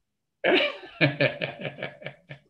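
A man laughing: a run of short bursts, loudest about half a second in and fading out toward the end.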